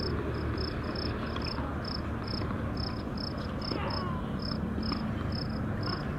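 An insect chirping in short, high pulses, about three a second, over a steady low rumble of outdoor background noise.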